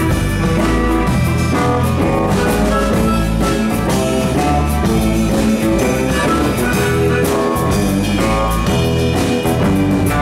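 Live blues band playing an instrumental passage without vocals: drum kit and bass guitar keeping a steady groove under keyboard and guitars, with harmonica.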